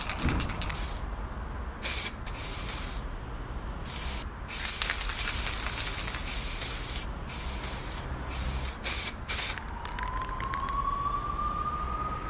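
Aerosol spray-paint can hissing in a series of short bursts over a low steady hum. Near the end a siren-like tone begins to rise slowly.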